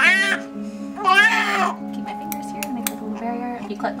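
Newborn baby crying: a short wail at the start, a longer, louder one about a second in, and a softer one near the end, over steady background music.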